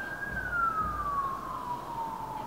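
A siren wailing in the distance: one slow glide up in pitch that peaks just after the start, then a long, even fall.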